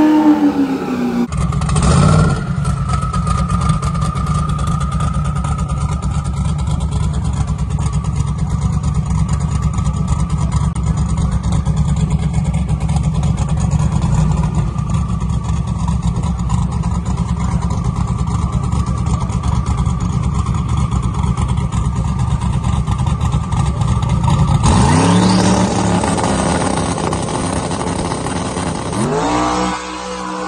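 Sixth-generation Chevrolet Camaro drag car's engine running steadily at the starting line for over twenty seconds, then launching about 25 seconds in, its pitch rising as it accelerates down the track with a gear change near the end.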